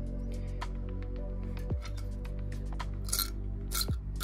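Soft background music, steady throughout, with a few light clinks of small copper-plated chips knocking together and against tweezers as they are moved about in a plastic tub, the brightest ones near the end.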